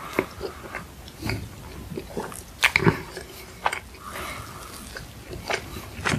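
Close-miked chewing of soft cream-filled cube bread: irregular mouth smacks and clicks, loudest in a cluster a little before halfway through.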